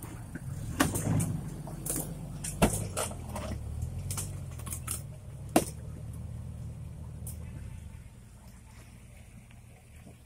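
Off-road 4x4's engine running at low revs, with several sharp knocks over it, the loudest a little past halfway; the engine fades near the end.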